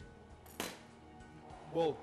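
A single sharp clink of a knife against a ceramic plate while flaking cooked fish, with faint background music underneath.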